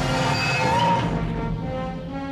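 Film score music with sustained chords, over a rushing noise that swells in the first second and then fades back under the music.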